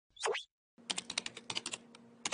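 Computer keyboard typing sound effect: about ten quick keystrokes over a second, as a web address is typed into a search bar. A short falling sweep comes just before the typing.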